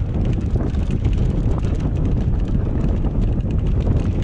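Mountain bike riding down a rough dirt singletrack: a steady rumble of wind buffeting the camera's microphone and tyres rolling over the dirt, with rapid clicks and rattles from the bike over the bumpy ground.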